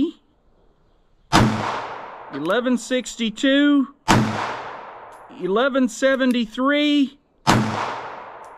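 Three shots from a Ruger LCP Custom .380 ACP pocket pistol with a 2.75-inch barrel, fired over a chronograph about three seconds apart. Each shot is sharp and followed by an echo that fades over about a second.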